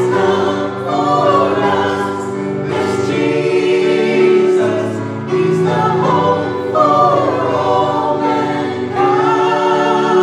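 A mixed group of women's and men's voices singing a gospel song in harmony into microphones, over sustained instrumental accompaniment.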